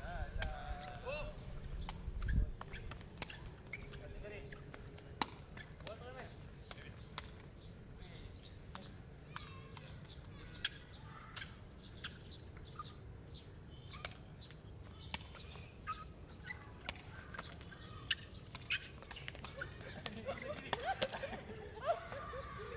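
A takraw ball being kicked back and forth in play: sharp, irregular smacks every second or two, with brief shouts from the players at the start and near the end.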